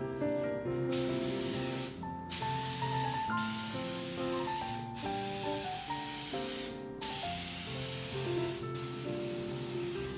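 Compressed-air spray gun spraying a coating over a painting: four long hissing bursts with short pauses between them as the trigger is pulled and released.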